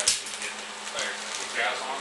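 A single sharp knock of the metal fuel tank being lifted off the motorcycle frame near the start, then low voices over a steady hum.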